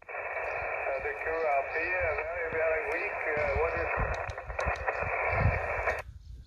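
Single-sideband voice from a distant amateur station coming through the Xiegu X5105 transceiver's speaker. The voice is narrow and thin, mixed with steady band hiss.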